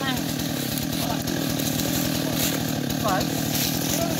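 Husqvarna two-stroke chainsaw idling steadily, not cutting, with no revving.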